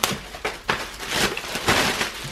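Handling noises from a large, newly unboxed brew kettle and its packaging: a sharp click at the start, then scattered rustles and light knocks, with a longer rustle near the end.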